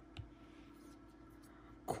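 Faint room tone with one light click about a fifth of a second in, as a hard plastic trading-card holder is handled.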